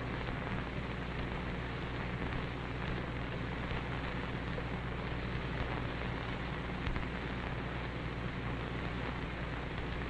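Steady hiss and low hum of a 1926 Vitaphone sound-on-disc recording, with no distinct sound event. There is one faint click about seven seconds in.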